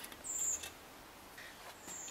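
A plant label pushed into a terracotta pot of moss, with soft scraping and handling noise. A short, high, thin chirp sounds about a quarter-second in, and a fainter one comes near the end.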